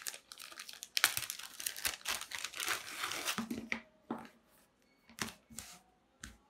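Clear plastic zip-lock bag crinkling as it is opened and a cork oil sump gasket is pulled out of it. It ends with a few short soft knocks as the gasket is laid flat on a cutting mat.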